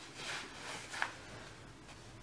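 Faint rustling of a fabric backpack being picked up and carried, with one light click about a second in.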